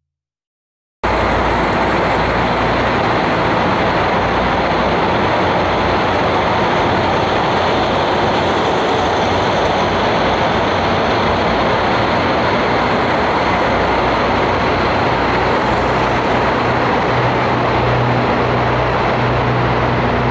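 After about a second of silence, a train runs along a station platform with a loud, steady rumble. A deeper hum grows stronger over the last few seconds.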